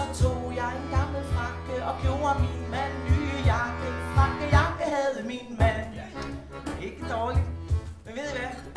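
Live acoustic band playing a Danish folk-style children's song: a woman sings into a microphone over accordion chords, a bass clarinet and a beat of cajón thumps.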